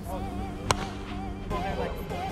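A plastic wiffle ball bat hits a wiffle ball once, a single sharp crack about two-thirds of a second in, over background music and voices.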